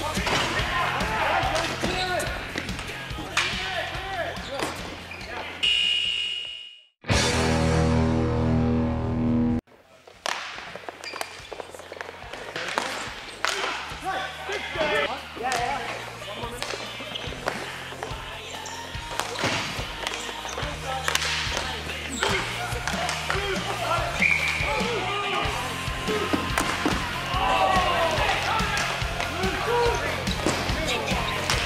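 Ball hockey play: sharp clacks of sticks and the ball on the sport court, with players calling out, over background music. About a third of the way in, the sound fades and a loud held tone with several harmonics sounds for about two and a half seconds, then cuts off.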